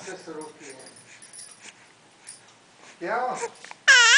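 A baby whimpers with a short rising and falling wail about three seconds in, then breaks into a loud, high-pitched cry just before the end.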